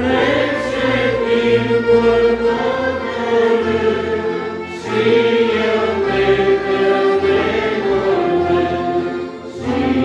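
A religious hymn sung by voices to a folk-style church band of accordions, clarinet, trumpet, electronic keyboard and acoustic guitar. It is sung in phrases, with short breaks about halfway and near the end.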